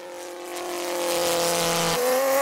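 Radio-controlled model aeroplane's motor and propeller buzzing at a steady pitch, growing louder over the first second as the plane flies in toward the field.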